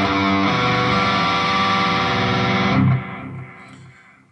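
Distorted electric guitar, a tiger-striped ESP, sounding low notes on the E string and then an arpeggiated G chord left ringing. The chord is cut off just before three seconds in, and a fading tail follows.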